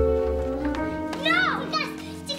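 Background music with held chords fading away, then children's high, excited voices break in about a second in.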